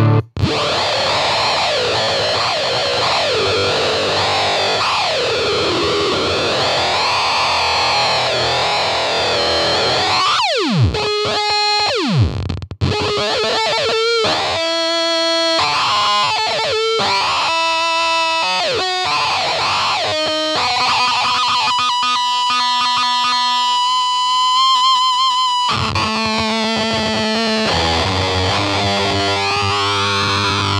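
Electric guitar with humbucker pickups played through a Mantic Flex fuzz pedal and a small tube amp, heavily fuzzed. About ten seconds in, two steep downward pitch dives, then held notes with a wavering pitch.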